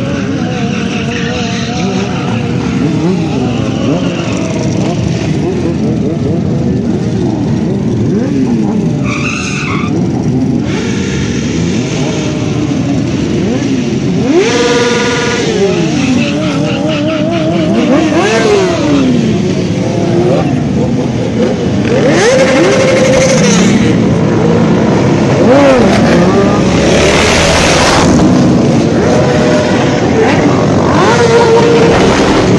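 Many motorcycle engines revving up and down at once, overlapping, with a short higher tone about nine seconds in; the sound builds louder in the second half.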